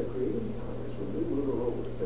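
Muffled, dull narration from a video played through room speakers, the voice's upper range lost, over a steady low hum.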